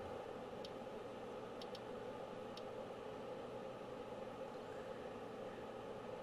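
Faint steady hum and hiss of a workbench room, with a few soft clicks about half a second in, a pair near two seconds and one more near two and a half seconds, from the oscilloscope's controls being turned.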